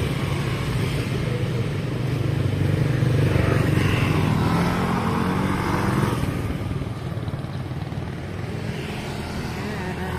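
Small motor scooter engines running as they ride past close by. The engine hum is loudest about three to four seconds in and eases off after about six seconds.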